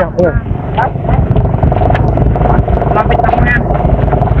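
Engine of the motor vehicle pacing the cyclists, running steadily with low wind rumble on the microphone; a steady tone joins about a second and a half in.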